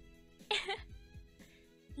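Faint background music of steady held tones. About half a second in there is one short, noisy vocal sound from the singer, lasting about a third of a second.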